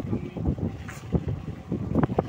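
A small 100 cc motorcycle running along a rough dirt track, with wind buffeting the microphone and irregular knocks as it jolts over the bumps.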